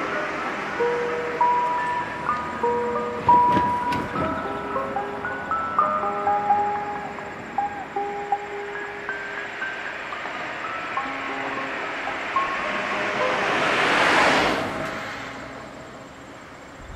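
A chime-like electronic melody of clear held notes, stepping from note to note. There are a few knocks about three and a half seconds in, and a broad swell of noise near the end that fades away.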